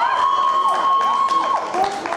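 Electronic fencing scoring machine sounding a steady beep, with a second, higher beep stopping about a second in and the lower one stopping near the end; voices shout over it.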